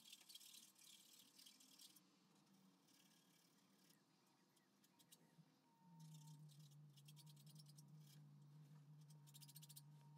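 Near silence: faint clusters of fine ticking and crackle, with a low steady hum that starts about six seconds in.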